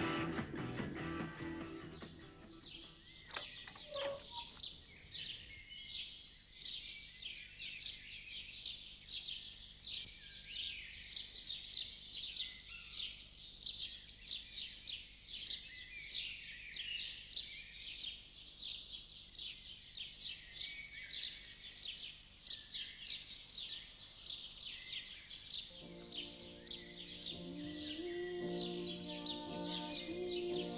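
Many songbirds chirping and singing in a dense, continuous chorus of short high calls. Rock music fades out at the very start, and soft music with held notes comes in near the end.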